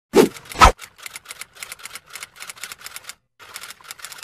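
Typewriter sound effect: a rapid run of key clacks, several a second, with a short break about three seconds in. Two louder hits come first, near the start.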